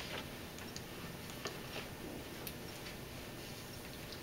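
Quiet room tone with faint, irregularly spaced small clicks and ticks.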